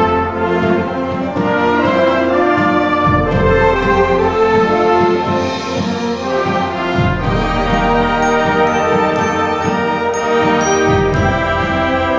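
Youth concert band of brass and woodwinds playing sustained full chords, with deep bass notes changing about every four seconds. Short high notes join in during the second half.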